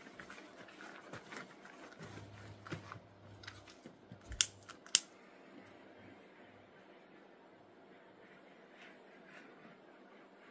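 Small handheld torch being clicked to light it: two sharp clicks of its igniter about four and a half and five seconds in, among fainter handling clicks, then a steady low background.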